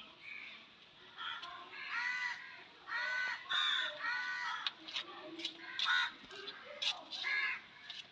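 Crows cawing repeatedly in a series of short, harsh calls, with a few sharp clicks in the second half.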